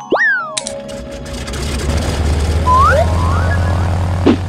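Cartoon sound effects over background music: a springy boing that shoots up in pitch and falls away at the start, then a low hum that builds and holds, with a couple of short rising whistles about three seconds in.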